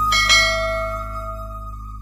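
A subscribe-animation sound effect: a short click and a single bell ding that rings out and fades over about a second and a half.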